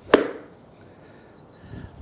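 A golf iron strikes a ball off an artificial-turf hitting mat once, a single sharp crack with a short ring-off. The shot is a steep downward blow that drives the ball into the ground.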